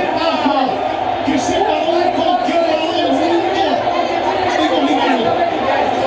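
Chatter of a small group of people talking over one another, several voices at once.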